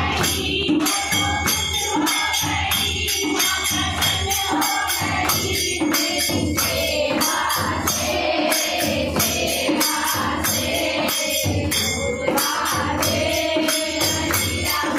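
Group of women singing a Hindi devotional bhajan to the Mother goddess in chorus, with hand-clapping and a dholak drum keeping a steady beat of about two to three strokes a second.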